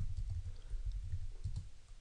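Typing on a computer keyboard: a run of soft, irregular key taps and clicks.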